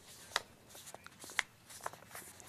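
Faint rustling with four short, sharp clicks: the loudest come about a third of a second in and near the middle, the other two just before and near the end.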